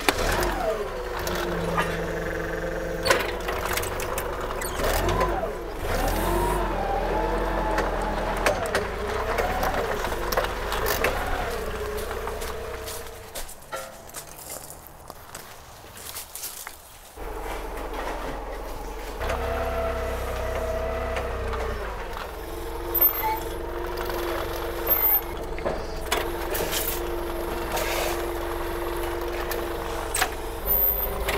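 Toyota forklift engine running, its pitch wavering up and down for a few seconds, with a quieter stretch in the middle before it runs steadily again.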